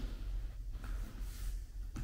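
Quiet room tone: a steady low hum with no clear footfalls or other distinct sounds.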